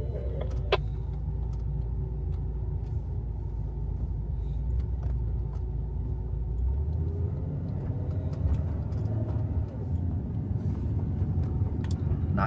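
Steady low engine and road rumble heard inside the cabin of an old camper van driving at low speed. About seven seconds in, the engine note shifts slightly higher as the van pulls on.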